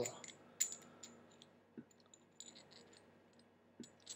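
Faint scattered clicks and light scraping of copper mechanical-mod parts handled in the fingers as a piece is guided down inside the copper tube.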